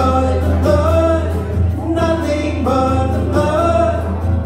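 A small acoustic band performing a gospel worship song live: men's voices singing over acoustic guitars.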